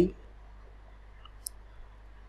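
A single short click about one and a half seconds in, over a low steady hum and faint room tone.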